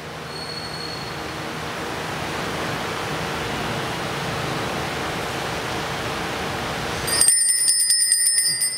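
A steady hiss, then about seven seconds in a high-pitched altar bell rung in rapid strokes, marking the elevation of the host at the consecration.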